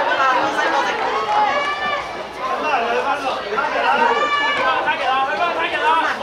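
Several voices talking and calling out at once, overlapping chatter with no single clear speaker.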